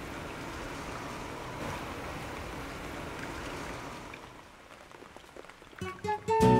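Steady rain falling, fading out over the last couple of seconds.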